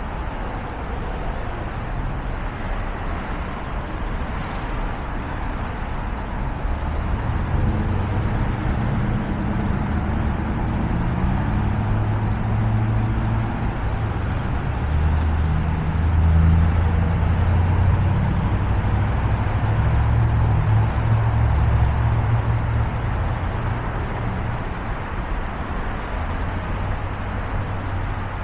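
Steady road-traffic noise, with motor vehicles passing close by. From about a quarter of the way in, a deep engine hum grows, climbing in pitch in steps like a vehicle accelerating through its gears, and is loudest past the middle.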